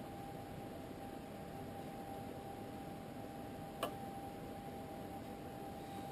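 Quiet room noise with a faint steady hiss and a thin steady whine, and one small sharp click about four seconds in: a tiny screwdriver tip against the opened iPhone 4S's metal internals while a screw is fitted.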